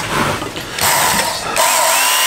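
Work Sharp WSKTS electric belt knife sharpener handled, then switched on about a second in: its motor drives the abrasive belt with a steady mechanical whir that gets louder and steadier a moment later, not very quiet.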